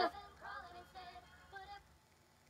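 A song with sung vocals playing faintly from an Amazon Echo Dot smart speaker, then cutting off shortly before the end as the speaker obeys a spoken stop command.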